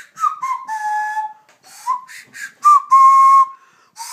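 Plastic nose flute blown through the nose: a string of short whistled notes, several sliding up into pitch, with breathy air noise between them. About three seconds in comes a longer held note, the loudest of them.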